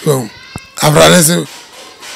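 A single wavering animal bleat lasting a little over half a second, starting about a second in, preceded by a brief voice sound and a click.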